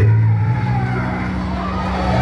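Vehicle engine and road noise heard from inside the cabin while riding in traffic: a steady low drone.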